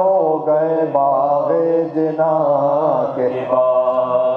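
Unaccompanied male voice chanting an Urdu marsiya in soz style, holding long, wavering drawn-out notes with brief breaks for breath.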